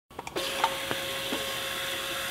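Primera AP360 label applicator running, its motor-driven rollers turning a glass bottle while a label is wrapped onto it. The motor gives a steady hum with one held tone from about a third of a second in, with a few light clicks early on.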